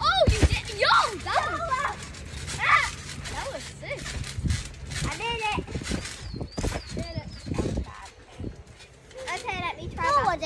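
High-pitched squeals, shrieks and laughter from young people, without clear words, with dull thumps of someone landing on a trampoline mat just after the start.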